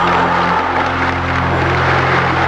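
A large crowd cheering and clapping, a dense, even wash of noise, with a steady low hum from the recording beneath it.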